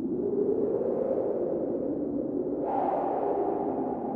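Atmospheric synthesized intro to a progressive metal recording: a noisy drone whose pitch rises slowly, then steps up higher about two-thirds of the way through.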